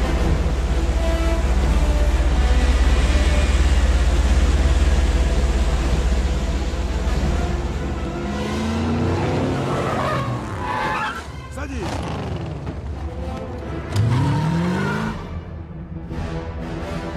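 Film soundtrack mix: a loud, deep roar from a large aircraft's engines under music for about the first eight seconds. Then come several rising whines of an engine revving, the strongest near the end.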